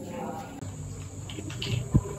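Wet hands rubbing cleanser lather over a face, over a steady high-pitched whine, with one sharp knock near the end.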